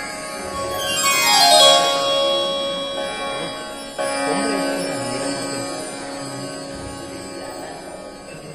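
Harmonium playing sustained reedy chords, with a quick descending run of notes about a second in and a new chord about four seconds in.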